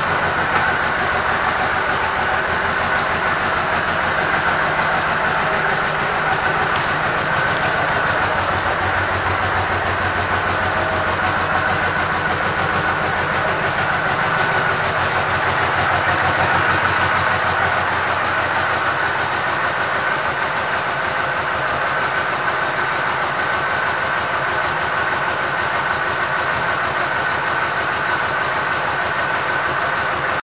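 Honda VTX 1800R's 1,800 cc V-twin engine idling steadily.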